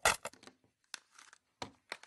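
Scattered sharp clicks and small taps of hands working with small hobby-model parts: a quick cluster at the start, then single ticks spaced irregularly.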